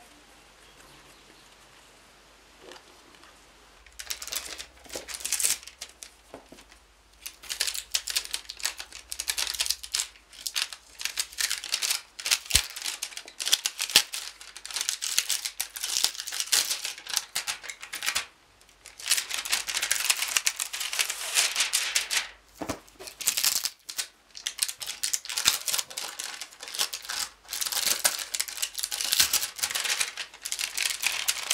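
Clear plastic shrink wrap on a boxed album crinkling and tearing as it is peeled off by hand. It comes in bursts with short pauses, starting a few seconds in after a quiet stretch.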